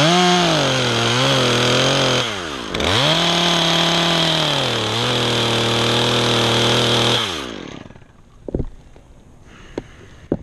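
Top-handle chainsaw running at full throttle, its pitch sagging slightly now and then as it cuts wood, with a short drop in revs about two seconds in before it revs up again. About seven seconds in the revs fall away, leaving a few sharp clicks.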